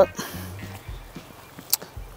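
A man's laugh trailing off, then faint background music with a few light knocks and one sharp click near the end.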